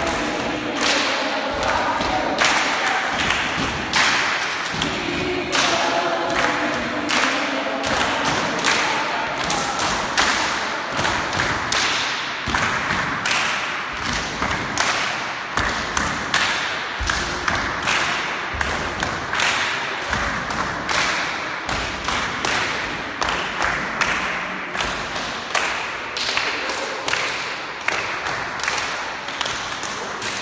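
A crowd of people clapping hands together in a steady rhythm, about two claps a second, in a large echoing room. In the first several seconds voices sing or hum along under the claps.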